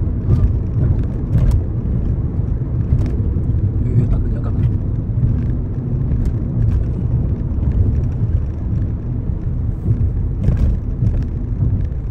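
Steady low road and engine rumble inside the cabin of a moving Nissan car, with a few faint clicks.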